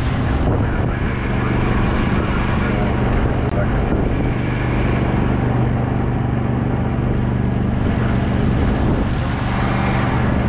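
Steady engine drone from a slow-moving truck spraying water, under a constant rushing hiss of water spray and wind.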